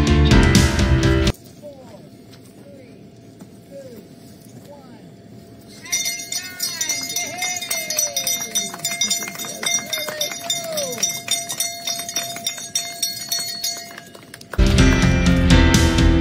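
Backing music, then a live stretch: a few short whoops, and from about six seconds in a bell clanging rapidly and repeatedly as runners set off on a loop at night. The music comes back near the end.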